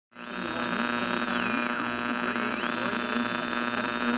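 A steady low hum with a high tone laid over it. The tone holds, slides down, climbs back up about halfway through and holds again, then starts sliding down once more near the end.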